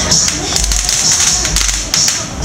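Loud dance music with a steady bass beat over crowd noise, with a run of sharp clicks in the second half.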